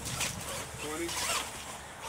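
R/C monster truck working its motor, tires spinning and scrabbling in dirt in two short bursts about a second apart.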